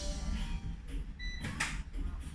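Quiet room sound with a steady low hum. A short high chirp comes a little over a second in, followed at once by a brief brushing or rustling noise.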